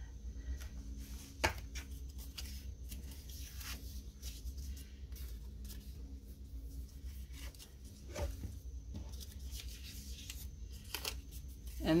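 Paper being handled: sticker-book pages and planner pages flipped, slid and pressed by hand, giving scattered soft rustles and light clicks over a faint steady low hum.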